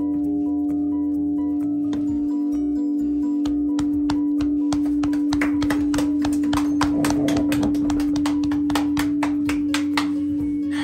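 Hand-rung church bell ringing in its tower, its deep hum note held strong and steady under fading higher overtones. From about four seconds in, a growing clatter of sharp clicks and rattles joins it.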